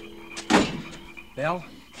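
Radio-drama door sound effect: a sharp click, then a heavier thump about half a second in, over the last held chord of a music bridge. A voice speaks briefly near the end.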